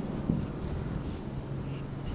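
Whiteboard marker drawing on a whiteboard: a few short, faint strokes as cell outlines are drawn.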